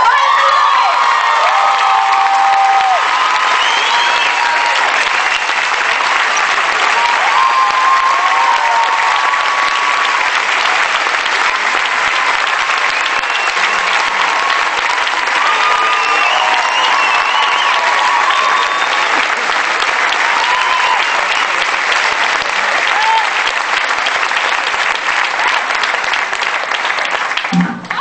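Long, steady applause from a large audience, with some voices and music faintly over it, dying down near the end.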